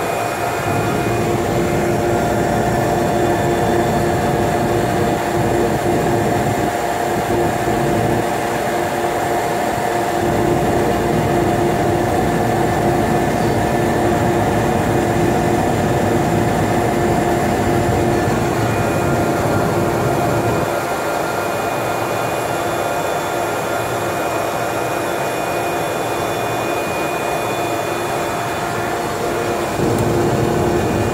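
GE H80 turboprop engine of a de Havilland Otter floatplane running steadily as the plane taxis on the water, heard from inside the cabin: a constant drone with a few steady tones, a little quieter from about twenty seconds in.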